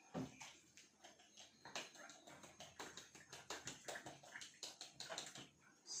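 Small spice mill being twisted to grind nutmeg over a pan: a faint, quick run of irregular clicks and rasps.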